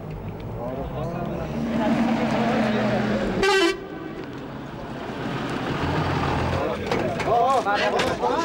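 A vehicle horn sounds one short toot about three and a half seconds in, over a steady low engine hum and the murmur of a crowd of men's voices.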